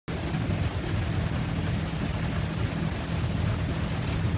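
Motorboat under way: a steady low engine rumble mixed with an even rush of wind and water.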